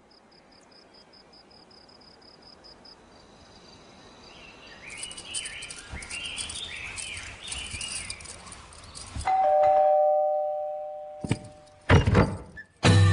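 A two-tone ding-dong doorbell chime rings about nine seconds in, the loudest sound, and fades over about two seconds. Before it, birds chirp, and in the first three seconds a fast-pulsing high trill fades out.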